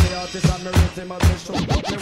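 90s dancehall music in a DJ mix, with a steady beat and turntable scratching over it in the second half.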